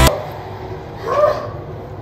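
One short high-pitched whine-like vocal sound about a second in, bending up then down, from a woman out of breath from hard exercise, over a low steady room hum.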